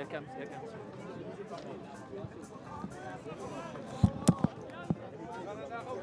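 Voices of players and spectators chattering at a sports field, with four sharp thumps in quick succession about four seconds in.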